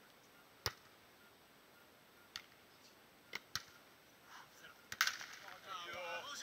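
A beach volleyball being struck by players' hands and forearms during a rally: five sharp slaps, the loudest about half a second in, then others spaced over the next four and a half seconds, two of them in quick succession.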